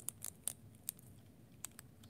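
A few faint, sharp plastic clicks and scrapes as a snug plastic helmet is twisted and pulled off an action figure's head by hand.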